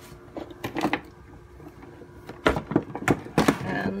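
Handling knocks and clatters as an electric longboard's wooden deck is moved and turned over: a few knocks early and a louder cluster of knocks in the second half.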